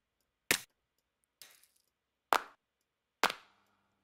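Sampled hand-clap one-shots from an electronic drum kit, triggered one at a time from slices of a single sample in Ableton's Simpler: four sharp claps about a second apart, the second one faint, each with a short decay.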